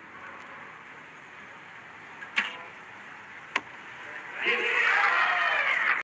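Recurve bow shot: a sharp snap as the string is loosed, a second sharp crack about a second later, then a crowd cheering loudly near the end as the arrow scores a ten.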